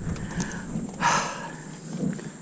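A person's short, breathy exhale about a second in, over faint outdoor background noise.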